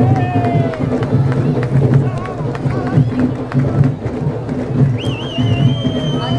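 Carnival street-parade sound: live music mixed with crowd voices, and a long high-pitched tone that starts with a warble about five seconds in.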